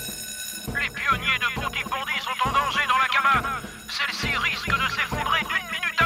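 Electric twin-gong fire station alarm bell ringing continuously, calling the crew out, with fast music playing over it.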